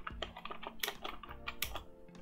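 Keystrokes on a computer keyboard: a quick, irregular run of key clicks, a few of them louder, as a line of BASIC is begun.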